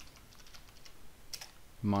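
Computer keyboard being typed on: a quick run of faint key clicks as a short command is entered, with one louder key stroke a little past the middle.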